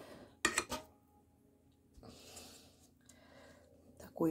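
Metal mixing bowl and kitchen utensil clinking, with a short knock about half a second in, then faint scraping about two seconds in as cake batter is scraped out of the bowl.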